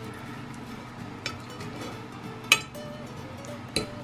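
A knife and fork cutting a steak on a glass baking dish, with three sharp clinks of metal on glass, the loudest about halfway through, over quiet background music.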